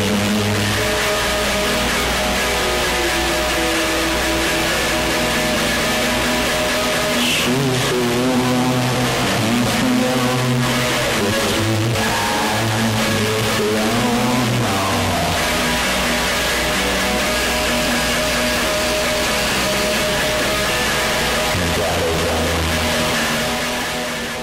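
Lo-fi punkabilly song in a stretch without vocals: electric guitar with wavering, bending notes over low bass notes. It starts to fade down near the end.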